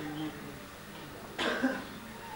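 A man coughs once, a short sharp cough about a second and a half in, after a faint low murmur of voice.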